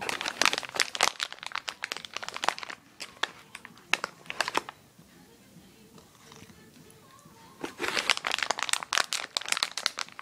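Crinkly cat-treat bag rustling in bursts: a long stretch of crackling over the first few seconds, a short burst about four seconds in, and another long stretch near the end.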